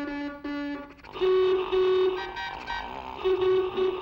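Cartoon car horns honking: two short, lower toots, then a run of longer, higher toots.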